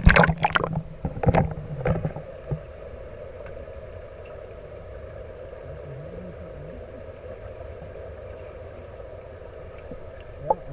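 Water splashing against a waterproof action camera at the surface of a swimming pool as it dips under. From about two and a half seconds in, the camera is submerged and picks up a steady, muffled underwater hum.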